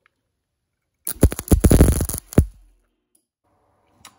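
Wire-feed welder arc crackling and buzzing in one loud burst of about a second and a half, as a nut is tack-welded onto a small steel mounting tab.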